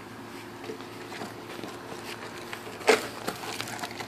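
A puppy playing with a balloon: faint scuffs and taps, then one sharp loud bump near the end, followed by a quick run of lighter taps.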